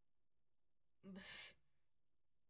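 Near silence, then about a second in a single short breathy voiced exhale from a person, like a sigh, lasting about half a second.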